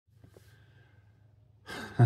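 Near silence with a faint low hum, then about one and a half seconds in, a man's audible sigh, a breath out.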